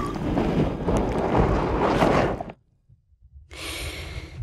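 Loud, dense rumbling destruction noise that cuts off suddenly about two and a half seconds in. After a brief near-silence, a single breath is heard lasting about a second.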